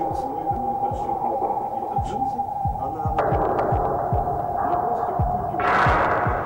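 A steady hum under low thuds that drop in pitch, about two to three a second, like a heartbeat. A hissing layer joins a little past halfway, and a brief swell of noise comes near the end.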